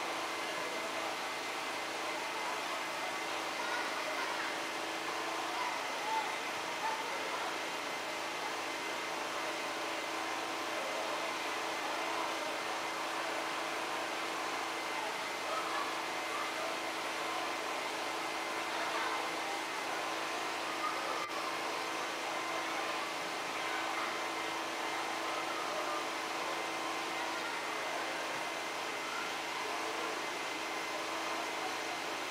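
Many indistinct voices murmuring over a steady background noise, with a constant low hum throughout.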